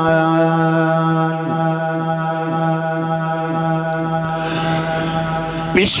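A man reciting the Quran in the melodic tajweed style, holding one long, steady note on a drawn-out vowel. Just before the end it breaks off and a new phrase begins on a rising pitch.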